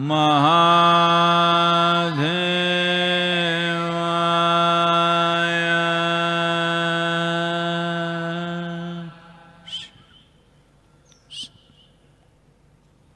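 A man's voice chanting the closing syllable of a Shiva mantra, one long steady held note for about nine seconds with a brief break about two seconds in, then it stops. Two short bird chirps come near the end.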